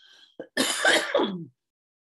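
A woman clearing her throat once, starting about half a second in and lasting about a second.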